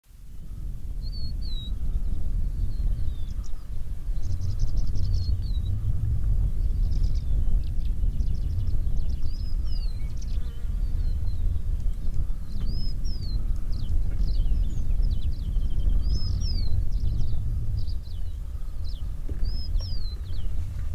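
Open-grassland ambience: a steady low rumble, with small birds calling over it throughout in short chirps, quick downward whistles and rapid ticking trills.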